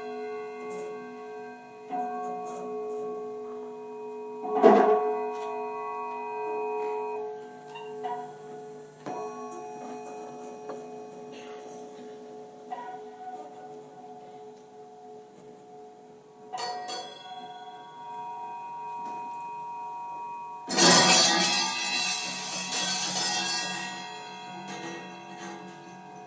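Free-improvised music from a cello, saxophone, percussion and synthesizer quartet: sparse sharp strikes about five and sixteen seconds in, each followed by several pitched tones that ring on, and thin high whistling tones in the middle. About 21 seconds in comes a loud, dense noisy crash that dies away over a few seconds.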